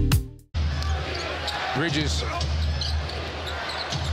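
Music fades out in the first half second; after a brief silence the arena sound of a basketball game broadcast comes in: a steady crowd murmur over a low hum, with scattered voices.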